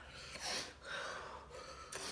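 A person's sharp breath about half a second in, then fainter breathing, as the mouth burns from very spicy instant fire noodles.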